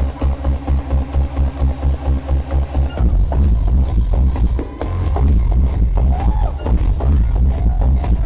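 Loud electronic dance music played live by a DJ over a club sound system, with a pulsing bass-heavy beat. The pattern changes about three seconds in, and a heavy bass swells back in near five seconds.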